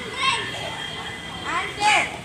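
Children's voices calling out: two short high-pitched shouts, the louder one near the end.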